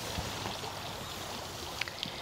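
Small garden water fountain trickling steadily, with one light click near the end.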